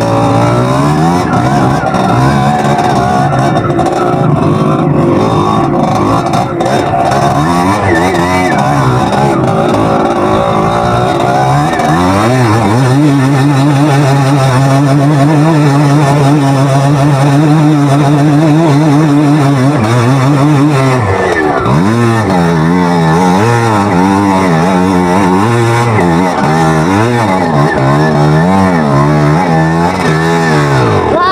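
Single-cylinder dirt bike engine being ridden off-road, its revs rising and falling: held steady for several seconds through the middle, dropping off sharply about two-thirds of the way in, then climbing and falling quickly again near the end.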